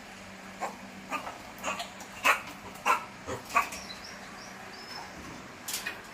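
A macaque giving a run of short, sharp, barking calls, about seven in three seconds and loudest in the middle, then a couple more near the end: angry calls at being watched.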